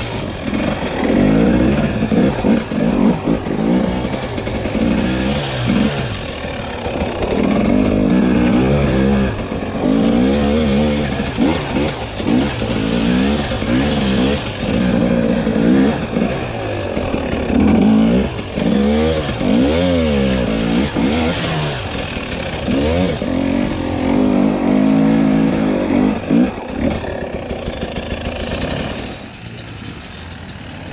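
Dirt bike engine revving up and down again and again as it is ridden along a forest trail, its pitch rising and falling with the throttle. It turns quieter in the last second or so.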